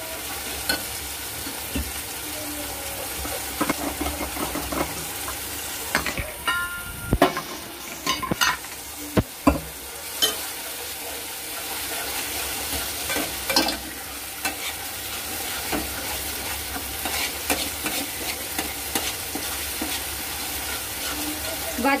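Oil sizzling steadily in an aluminium pan on a gas flame, with a spatula stirring and scraping against the pan in short, irregular clicks and knocks.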